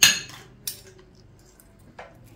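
Cutlery clinking against dishware: one sharp, ringing clink right at the start, and a lighter click about two-thirds of a second later.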